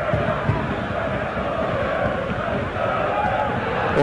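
Football stadium crowd: a steady noise of many supporters' voices shouting, with some chanting.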